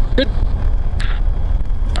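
Cockpit noise of a Cessna 172 rolling out on the runway just after touchdown: a steady low rumble of the engine, propeller and airframe, with a brief hiss about a second in.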